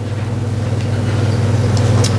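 A steady low hum with a fainter higher overtone, slowly growing a little louder, with a couple of faint ticks near the end.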